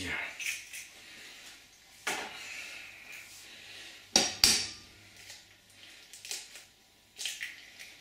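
An egg knocked against the rim of a metal mixing bowl: two sharp cracks about four seconds in, the loudest sounds here. Lighter clicks and clinks of eggshell against the bowl come before and after as the eggs are separated.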